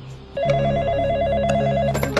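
A telephone ringing: a fast warbling electronic ring that starts about a third of a second in, over a low steady drone.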